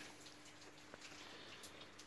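Near silence: workshop room tone with a faint steady hum and a single faint tick about a second in.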